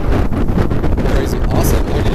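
Strong wind buffeting the microphone: a loud, steady rumble.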